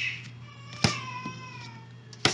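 A sharp click, then a single drawn-out, high-pitched call or squeak that slides slightly downward for about a second.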